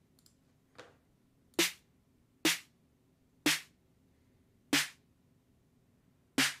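Electronic drum-machine snare sample ('Trap Door' kit) sounding as single hits: a faint one, then four separate hits about a second apart. The notes are being transposed down in the piano roll to make the snare deeper.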